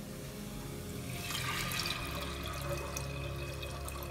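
Water poured from a glass measuring jug into a pressure cooker over soaked whole black lentils: a steady pouring and splashing that starts about a second in.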